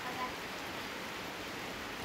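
Steady, even hiss of background noise, with a faint voice briefly at the start.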